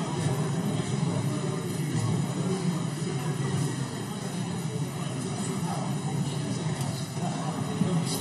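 Indistinct murmur of many people talking in a large chamber, over a steady low rumble.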